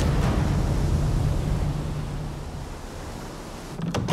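Steady rushing noise like wind and sea surf, slowly fading, with a low hum under it. Near the end a door latch clicks.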